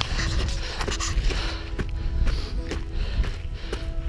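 Background music over footsteps crunching on gravel, about two steps a second, with a low rumble underneath.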